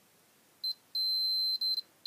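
Multimeter continuity tester beeping as the probe tips touch the lamp's circuit: a brief chirp, then a longer steady high-pitched beep with a short dropout. The beep signals that the two probed points are connected.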